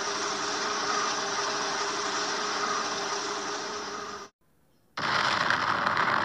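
Explosion sound effects: a sustained rushing rumble with a faint low hum beneath it that cuts off abruptly about four seconds in, then after a short gap a second, brighter rush begins near the end.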